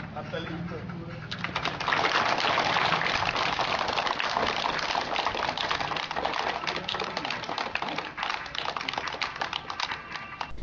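A crowd of schoolchildren clapping, starting about a second in and going on steadily as a dense patter of claps, with voices mixed in.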